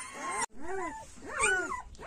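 A Kangal mother dog whining in two drawn-out calls that rise and fall, about a second apart. She is anxious and unsettled because her newborn puppies have just been moved to a new kennel.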